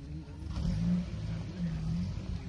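Asiatic lion roaring: two low, drawn-out calls about a second apart over a low rumble.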